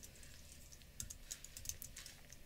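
Faint keystrokes on a computer keyboard: a run of light, irregularly spaced key clicks as a short command is typed.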